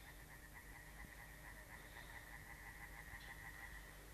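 Near silence, with a faint, steady high-pitched tone that stops just before the end.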